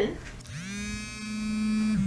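Smartphone vibrating with an incoming call: one steady buzz of about a second and a half, which spins up at the start and winds down as it stops.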